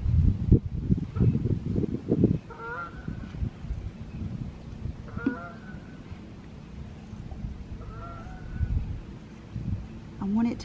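Geese flying overhead and honking, three short calls a few seconds apart, over a low rumbling noise that is loudest in the first couple of seconds.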